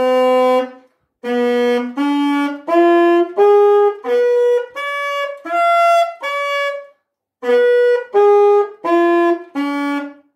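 Alto saxophone played solo in detached, evenly held notes, about one and a half a second, climbing step by step and then coming back down, as A minor chord arpeggio practice. There are short breaths around a second in and again about seven seconds in.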